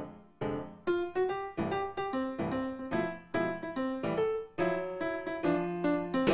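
Background music: solo piano playing a melody of separate struck notes, about three a second, each ringing and fading.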